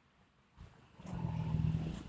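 A motor engine's low, steady hum comes in about halfway, after a near-silent start.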